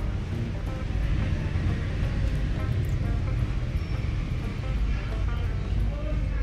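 Egg-and-milk flan custard trickling through a fine mesh sieve into a pot of the same mixture, over a steady low rumble and faint background music.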